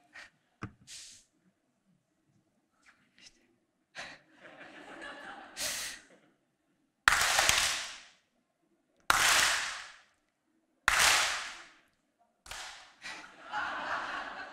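An audience clapping together on cue, in three loud, sudden bursts about two seconds apart, each with a ragged tail where the hands are not quite together.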